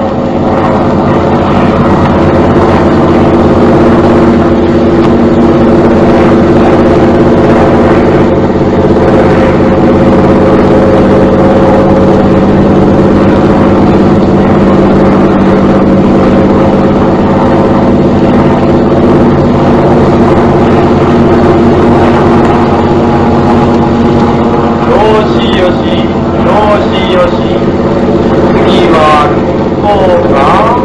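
Propeller fighter plane's piston engine droning loudly and steadily in flight during aerobatic test manoeuvres.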